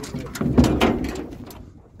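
Hooves knocking and scraping on the floor of a steel stock trailer, with the trailer's metal panels rattling as a horse steps in. The loudest knocks come about half a second to one second in, then fade.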